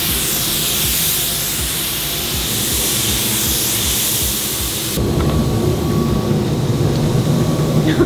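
Gravity-feed paint spray gun hissing steadily as it sprays a coat of paint onto a car, cutting off abruptly about five seconds in. Background music with a low beat runs underneath.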